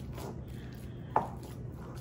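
Hands kneading and squishing raw ground-beef meatloaf mixture in a glass bowl, soft and fairly quiet, with one brief sharper sound a little after a second in.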